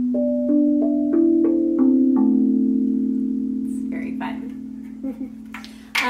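Large, thin steel tongue drum with a sound hole on top, struck with a mallet: about seven low notes in quick succession over the first two seconds, then left to ring on and slowly fade.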